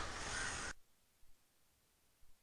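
Near silence: faint recording hiss for under a second, then it cuts off to dead silence.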